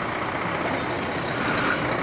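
A road vehicle passing close by: a steady hiss of engine and tyre noise with no distinct tones, growing slightly louder near the end.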